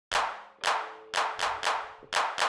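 A rhythmic run of hand claps: two spaced about half a second apart, then three quicker ones, each with a short ringing tail.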